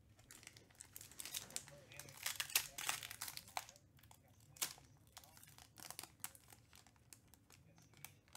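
Foil trading-card pack crinkling and tearing as it is opened by hand. A dense run of crackles comes in the first half, then a single sharp crack and scattered crinkles.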